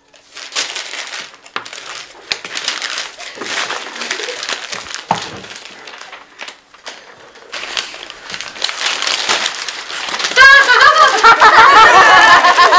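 Crumpled paper crinkling and crackling as paper balls are handled and smoothed open. Loud voices break in near the end.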